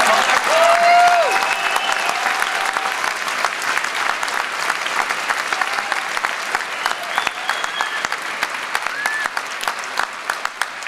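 Audience applauding, with a few cheers and shouts over the clapping. It is loudest in the first second or so and slowly dies down.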